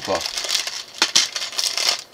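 Clear plastic bags of building bricks crinkling as they are handled, with a couple of sharp plastic clicks about a second in.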